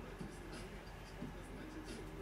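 Soft, faint rustling of cotton children's clothes being lifted off and laid down on a pile of garments, with a few brief scuffs of fabric against fabric.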